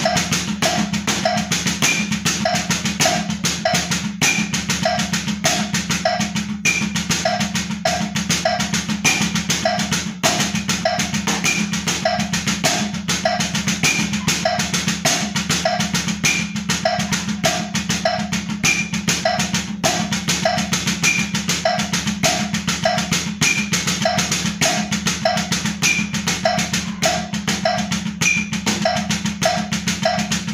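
Drumsticks playing fast, even strokes on a practice pad in a right, left, right-right, left, right-right, left sticking pattern at 100 BPM, without a break, over a steady backing beat.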